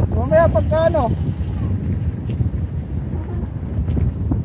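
Wind buffeting the microphone of a camera on a moving bicycle, a steady low rumble, with a person speaking briefly in the first second.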